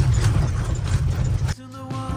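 Motorhome cabin road noise on a gravel road: a steady low rumble with small clicks and rattles. About one and a half seconds in it cuts off abruptly and music begins.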